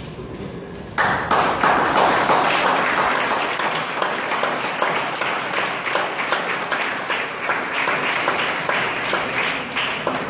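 Audience applause breaking out suddenly about a second in, then continuing and slowly easing.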